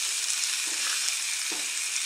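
Hot dogs sizzling on a hot cast iron griddle, a steady frying hiss.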